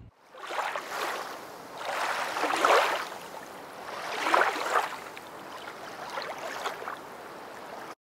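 Water washing and sloshing in four swells, about two seconds apart.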